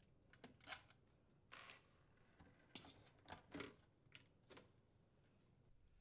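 Near silence with a few faint, scattered clicks and taps: a screwdriver working the screws and the plastic dishwasher filter assembly being handled and lifted out.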